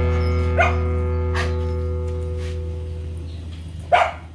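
A few short dog barks over background guitar music whose held chord fades away; the loudest bark comes near the end.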